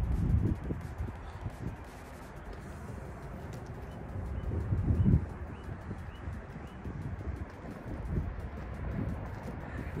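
Wind rumbling on the microphone outdoors, with a small bird chirping faintly and repeatedly in the middle.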